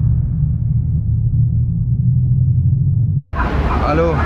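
Low, steady rumble of a vehicle running. It cuts out briefly a little after three seconds in, then comes back louder and noisier with a voice in it.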